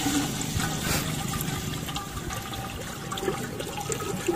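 Water pouring in a steady stream from a large plastic bottle into an aluminium cooking pot, splashing into the water already in the pot.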